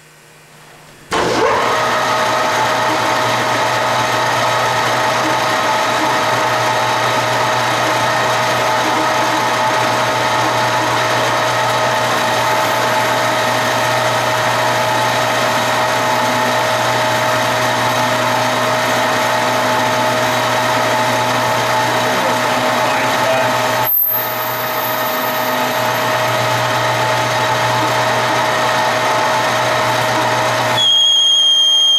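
H.E.S. 16"x50" engine lathe starting up about a second in and then running steadily with a whine, its chuck spinning a workpiece. The sound dips briefly about three-quarters of the way through.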